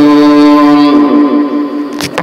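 A reciter's voice holding one long, steady chanted note of Arabic ruqyah recitation; the note slides down and fades away about a second and a half in.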